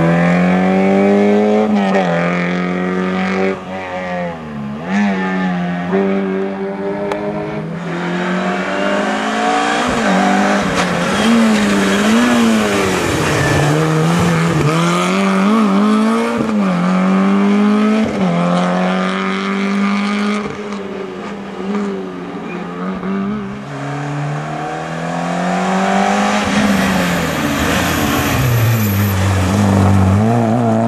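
Peugeot 106 rally cars' four-cylinder engines revving hard through hairpin bends, one car after another. The pitch climbs through the gears and drops on each lift-off and downshift, with tyres squealing in the turns.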